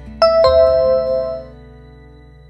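A two-note electronic ding-dong chime, high then lower, struck about a quarter-second apart and ringing out over about a second, over soft background music. It is the quiz's answer-reveal signal for the correct choice.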